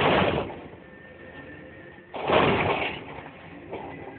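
Two heavy metallic bangs about two seconds apart, the second the louder, from a container crane's spreader and the steel containers it is handling, over a faint steady high tone from the crane.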